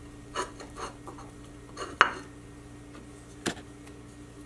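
A glue brush scraping across a small wooden angle piece in a few short strokes, with one sharp tap about halfway through.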